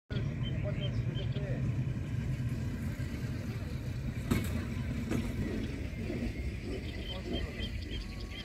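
Outdoor background with a steady low rumble, faint high chirps near the start and again near the end, and two sharp clicks in the middle.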